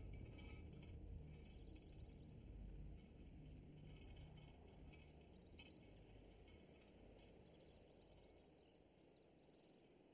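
Faint crickets chirring steadily, with a low rumble underneath that slowly fades.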